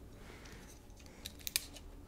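A few small, sharp clicks close together, starting a little over a second in, from a small object handled in the fingers.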